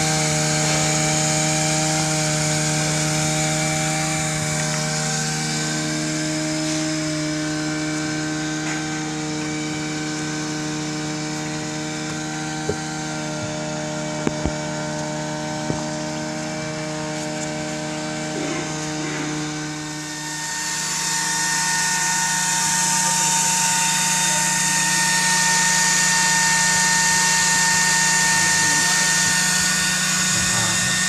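A steady mechanical hum from a running motor, a low buzzing tone with overtones and a hiss above it. A few sharp clicks come around the middle, and the tone shifts about two-thirds of the way through.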